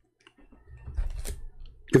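A few clicks over a low rumble, starting about half a second in.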